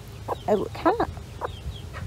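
Broody hen clucking in the nest box, a quick run of short clucks and squawks about half a second to a second in, then a few single clucks: the sound of a temperamental, disturbed broody hen.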